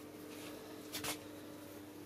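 Plastic bucket of honey being handled, with a quick double click about halfway through, over a steady low hum.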